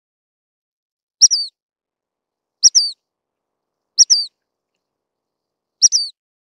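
Dark-sided flycatcher calling: a short, high two-part call, a sharp note then a falling slur, repeated four times about every one and a half seconds.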